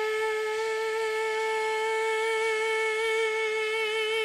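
A woman's alto voice holding one long sung note, steady in pitch, the closing note of the song's alto line, with a slight vibrato coming in near the end.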